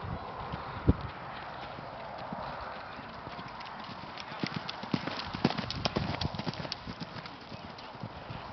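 A pony's hoofbeats on a sand arena, an irregular run of thuds and clicks about four to seven seconds in as it trots and canters close by. A single dull thump comes about a second in.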